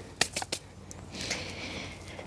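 A few light clicks followed by a soft rustle, as gloved hands handle plastic seedling trays and garden soil.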